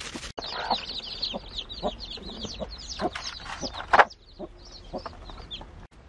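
Chickens calling: a dense chorus of high, short, downward-gliding chick peeps with lower clucks among them, starting after a brief gap about a third of a second in, and one louder call about four seconds in.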